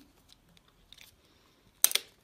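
A handheld stapler pressed shut through folded paper, driving a staple: a brief, sharp, loud click near the end, after near-quiet handling.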